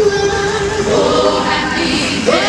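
Teen gospel choir singing live, holding one long note, with higher voices coming in about a second in.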